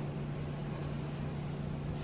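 Room tone: a steady low hum over a faint, even hiss, with no other event.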